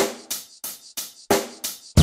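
Music with a drum beat: sharp hits about three a second, each dying away quickly.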